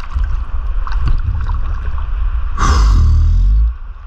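Sea water sloshing and lapping around a camera held at the surface, with a steady low rumble. About two and a half seconds in, a louder rushing burst lasts about a second and then cuts off.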